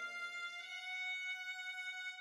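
Sampled string-quartet playback from a notation program's soundfont, with the last chord dying away: a low note drops out about half a second in while a single high violin note is held and fades out.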